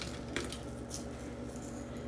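A few light clicks of small candy toppings being picked out of glass bowls by hand, near the start, over a faint steady low hum.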